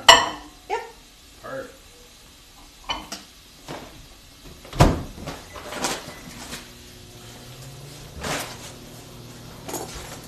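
Kitchen clatter: dishes and utensils knocking and set down, with one heavy thump about halfway. A low steady hum sets in for the last few seconds.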